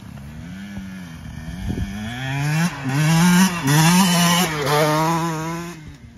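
KTM 150 SX two-stroke dirt bike engine revving, its pitch climbing and dropping sharply several times as it is ridden hard. It grows louder to a peak in the middle and fades near the end.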